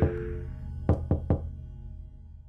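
Knocking on a door: three quick raps about a second in, each with a short ring after it, following the last rap of an earlier set at the very start.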